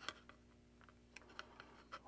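Near silence broken by a few faint, short clicks of wire and the antenna's mounting frame being handled as the wire is threaded through its holes.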